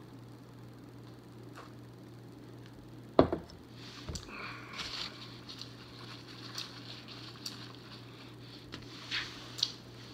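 Quiet mouth and swallowing sounds of a man drinking beer from a glass. There is one sharp knock about three seconds in, faint small clicks after it, and a low steady hum throughout.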